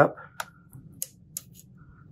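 Three small, sharp clicks within about a second: a plastic spudger tip working at the latch tab of a ribbon-cable connector to flip it up.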